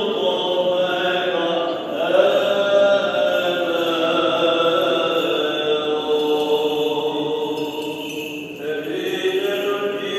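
Byzantine chant of a Greek Orthodox vespers: a chanting voice holding long, drawn-out melismatic notes that slide slowly from pitch to pitch, with no break for words.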